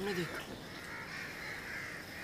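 Faint, hoarse bird calls, several drawn-out calls one after another.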